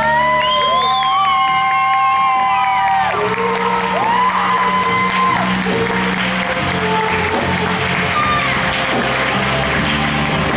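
Live rock band playing: electric guitars, bass and drum kit under female singers, who hold long notes with slides in pitch over the first few seconds and again midway. Audience clapping and cheering along.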